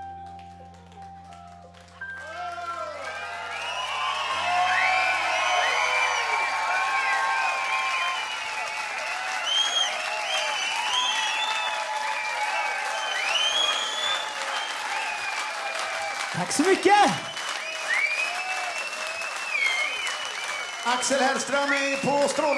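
The last sustained keyboard chord of a rock ballad fading out, then a live audience applauding, cheering and whistling, building up over the first few seconds and carrying on. One brief, louder shout stands out about three quarters of the way through.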